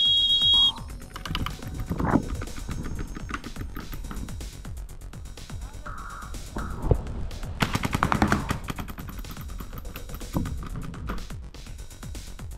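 Paintball markers firing rapid strings of shots, densest about two seconds in and again around eight seconds in. A high steady tone, like a field whistle or buzzer, cuts off within the first second.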